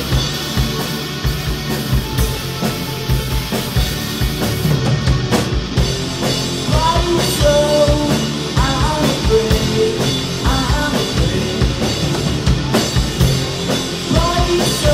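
Live rock band playing: electric guitars, bass guitar and a drum kit keeping a steady beat, with a voice starting to sing about halfway through.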